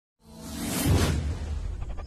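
A whoosh sound effect that swells in with a deep low rumble, peaking about a second in and fading, as an intro jingle's music begins near the end.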